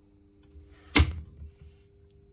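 A single sharp mechanical click about a second in, from the booster pump circuit being reset in the pump control panel, over a faint steady electrical hum.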